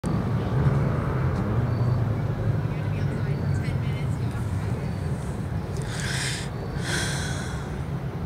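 Steady low rumble of distant city traffic. Two short soft hisses come about six and seven seconds in.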